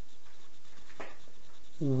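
Steady background hiss with a faint, brief vocal sound about halfway through. A man's voice, loud, starts at the very end.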